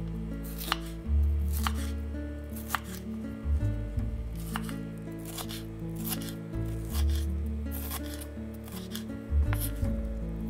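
Chef's knife chopping orange bell pepper on a wooden cutting board: sharp knocks of the blade on the board, roughly one a second.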